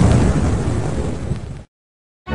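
A trailer-style explosion sound effect: a loud rush of noise, heaviest in the low end, that fades slowly and cuts off abruptly about a second and a half in.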